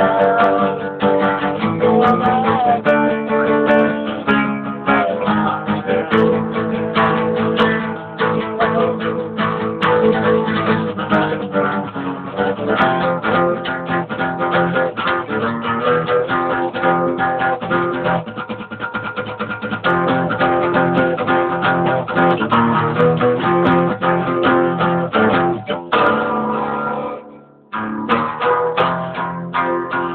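Acoustic guitar played continuously, with a quick run of plucked and strummed notes, and a short break about two seconds before the end.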